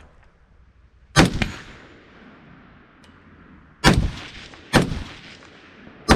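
Three rifle shots: one about a second in, then two close together near four and five seconds in, each trailing off in an echo.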